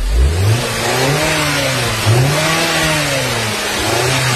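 A car engine running on a jump start from a portable lithium jump starter clamped to its battery, revved repeatedly so that its note rises and falls about every second and a half.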